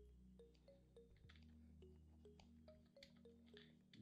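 Near silence: a faint steady low hum with soft ticks, about two or three a second.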